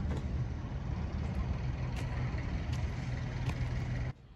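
Steady low mechanical drone of a running engine or machine, with a few faint clicks over it; it stops abruptly near the end.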